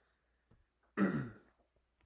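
A man coughs once about a second in, a short throat-clearing cough that starts sharply and trails off.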